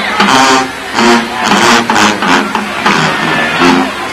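HBCU marching band playing in the stands: the brass, led by a big sousaphone section, punches out short, rhythmic low notes over drum and cymbal hits.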